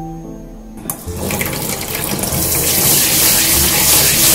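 Kitchen tap running onto rice in a stainless mesh strainer in a sink, washing the rice. The water starts about a second in and grows louder, then holds steady.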